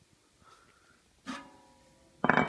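A single metal clank just past halfway that rings briefly with a few steady tones: the 10 kg calibration test weight knocking against the steel platform of a floor scale as the scale is unloaded.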